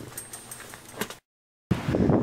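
Faint rustling with a few small clicks, the loudest about a second in, then a sudden cut to a moment of dead silence. After that, wind buffets the microphone outdoors.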